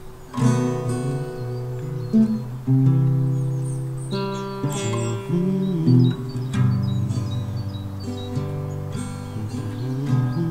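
Acoustic guitar music: chords and single notes plucked and strummed, ringing on between strokes.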